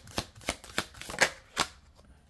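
Oracle cards shuffled by hand: a quick, uneven string of sharp card snaps, the loudest a little past a second in, thinning out near the end.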